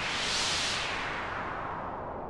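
GarageBand's Ocean Waves Modular synth patch sounding one held note: a swell of hiss imitating an ocean wave, brightest about half a second in, then slowly receding.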